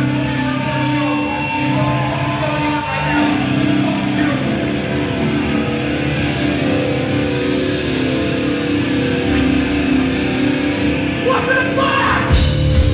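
Hardcore band playing live, loud distorted electric guitars holding long, ringing chords, with no clear drumbeat until near the end.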